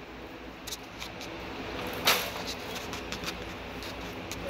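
Light clicks of a laptop being worked, over a steady low hum, with a brief rustle about two seconds in.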